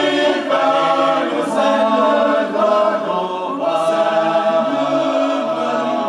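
Men's choir singing a cappella in several parts, holding long chords that shift every second or so.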